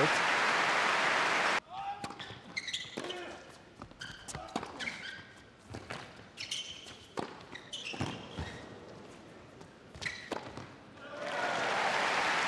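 Arena crowd applause cuts off suddenly, followed by a tennis rally on an indoor hard court: sharp ball bounces and racket strikes with short shoe squeaks in a hushed hall. Crowd applause builds again near the end as the point finishes.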